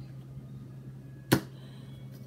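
A single sharp snap, like a card or a light object slapped down, about a second and a half in, over a steady low electrical hum.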